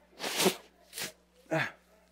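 A man with a cold blowing his nose: three short, noisy blasts, the first the longest and loudest, the others about a second and a second and a half in.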